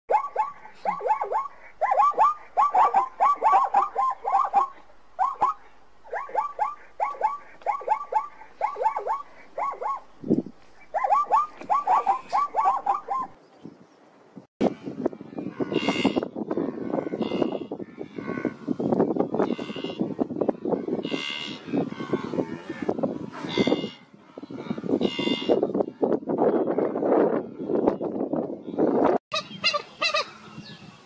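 Zebras barking: runs of short, quickly repeated yelping calls. After a brief pause about halfway, a herd of wildebeest grunts and lows in dense, overlapping calls.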